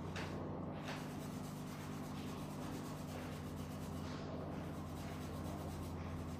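Faint rubbing of gloved hands on a client's bare leg during a pedicure, over a steady low electrical hum.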